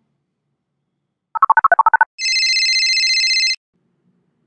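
Video-call app sounds as an outgoing call is placed: a quick run of about a dozen short beeps alternating between two pitches, then a steady electronic ringing tone about a second and a half long.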